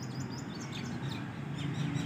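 Birds chirping faintly in the background: a quick run of short, high notes, thickest in the first second, over a low steady hum.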